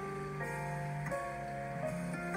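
Slow, calm instrumental meditation music, with sustained notes that change about every half second.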